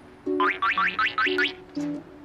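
Light, playful background music with short low notes, and a rapid run of about six rising pitch glides, like a cartoon sound effect, in the first half.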